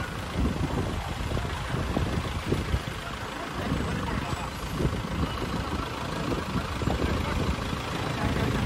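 Motor vehicle engines running slowly in street traffic, with motorcycles among them, and voices in the background.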